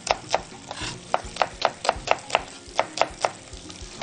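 Kitchen knife chopping red onion on a wooden cutting board: a run of sharp knocks, about three or four a second.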